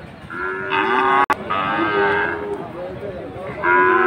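Cattle mooing: one long moo about a second in, and another starting near the end. A single sharp click cuts through the first moo.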